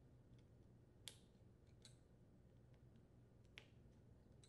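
Near silence broken by three faint clicks, about a second in, near two seconds and near the end: pliers squeezing and sliding the spring clamps on the rubber fuel lines of a small-engine fuel pump.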